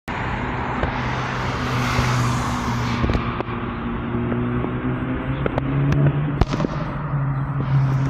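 Outdoor street traffic: a steady low engine hum from a nearby vehicle, with a car passing about one to three seconds in and a few scattered clicks and knocks.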